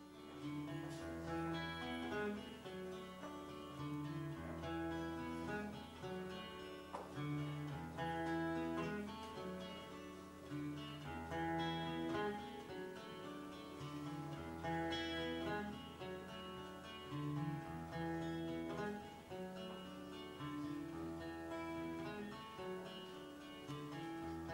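Solo acoustic guitar, fingerpicked: a picked melody over deep bass notes that change every second or two. This is the instrumental introduction to a folk song, before the voice comes in.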